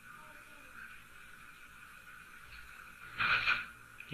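Mostly quiet room tone, with one short hissy sound a little past three seconds in.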